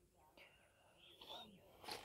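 Near silence: faint outdoor background with a few faint, brief high chirps.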